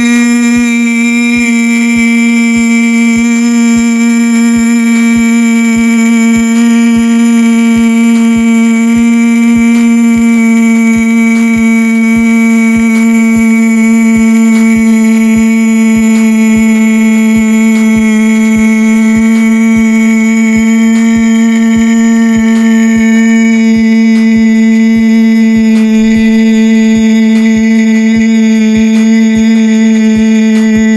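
A man's voice holding the drawn-out 'ee' of 'yeah boy' as one loud, unbroken note at a nearly constant pitch, dipping very slightly about ten seconds in. A faint regular click sounds beneath it about every two-thirds of a second.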